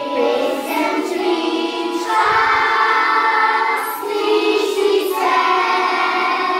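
A group of young children singing a song together in Slovenian, over steady instrumental accompaniment.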